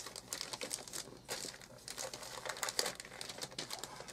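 Wrapping paper crinkling in short, irregular rustles as hands fold and press it over the side of a gift box.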